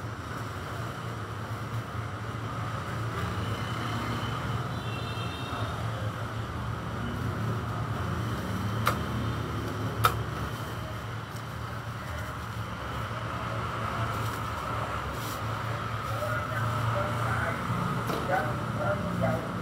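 Steady background rumble and low hum of room ambience, with two sharp clicks a little over a second apart near the middle.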